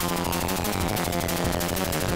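ZX Spectrum chiptune music: a pitched sweep falls slowly over a dense, buzzing noise texture, with low steady tones beneath.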